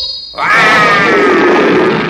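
An adult tiger roaring: one long, loud, rough call starting about half a second in, its pitch falling slightly as it goes.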